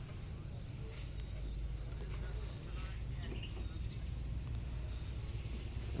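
Outdoor background: a steady low rumble with faint bird chirps scattered through it and distant voices.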